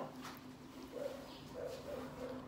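A person biting into and chewing a cooked prawn, with faint wet mouth sounds, and a few short, faint squeaks about a second in and again near the end.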